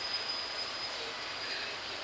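Steady city background noise with a faint high, steady whine that fades out near the end.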